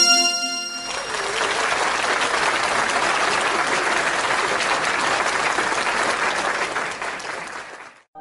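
Applause, many hands clapping steadily for about seven seconds and fading out near the end, following the tail of a short musical chord in the first second.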